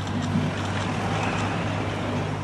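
Outdoor street ambience: a steady low hum under a noisy wash of wind on the microphone, with a faint murmur of nearby voices.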